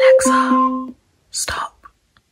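An Amazon Echo Dot's alarm chime, a clear repeating ringing tone that cuts off just under a second in, with a hushed, whispered voice over its start and another short whispered word about a second and a half in.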